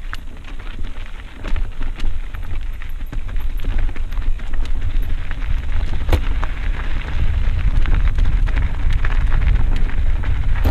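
Mountain bike rolling down a loose dirt singletrack: tyres crunching over dirt and small rocks, with frequent clicks and rattles from the bike, over a rumble of wind on the microphone. A sharp knock comes about six seconds in, and it grows louder as the bike picks up speed near the end.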